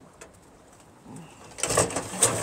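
A faint dove-like coo about a second into a quiet outdoor stretch, followed near the end by a louder burst of rustling and scraping noise.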